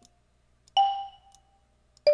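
A single marimba note from the Numa Player software instrument's Marimba preset. It is struck about three-quarters of a second in and rings down over about a second. The tail of an earlier note fades out at the very start.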